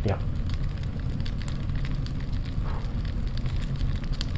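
Fire sound effect: burning flames crackling irregularly over a steady low rumble.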